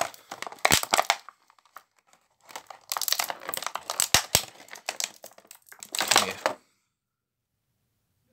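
Thin plastic blister-pack tray crinkling and crackling as an action figure's gun is popped out of it. It comes in two spells of handling with a gap of about a second between, then stops suddenly.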